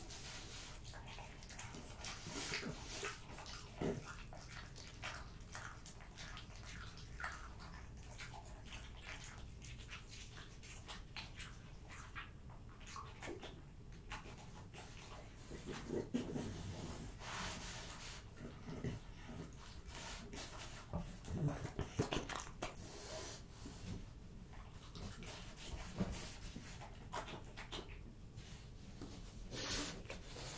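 French bulldog eating raw red meat close to the microphone: wet, irregular chewing, lip-smacking and licking. There are louder clusters of chewing partway through and again later.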